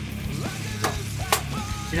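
Bacon frying in a skillet, with two sharp clicks of a utensil against the pan near the middle, over faint background music.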